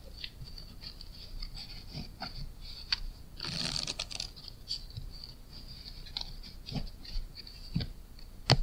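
Playing cards handled on a padded close-up mat during a Zarrow table shuffle done at speed: light clicks and slides of the card packets, a brief rustle of the halves riffling together about three and a half seconds in, and a few sharper taps as the deck is squared and cut near the end.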